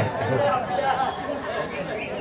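Speech only: men's voices talking quietly, with chatter.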